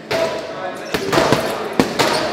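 Boxing gloves punching a heavy bag: three heavy thuds, a little under a second apart.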